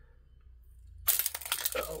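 Eyeglasses dropped onto a concrete floor: a sudden sharp clatter of a few quick clinks about a second in, after a near-quiet start.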